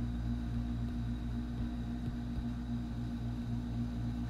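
A steady electrical hum with a faint high whine, unchanging throughout.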